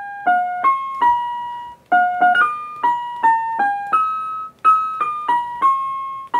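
Music Pots touch-sensitive planter playing piano notes through its built-in speaker, one note each time a leaf of its basil plant is tapped, stepping through a built-in melody. The notes come singly, about three a second, in three short phrases with brief pauses between them.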